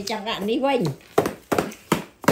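A small child's voice for about a second, then three sharp knocks about a third of a second apart: a piñata stick being struck repeatedly.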